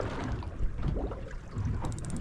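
Wind buffeting the microphone over water lapping against a fishing boat's hull, with a few faint clicks near the end.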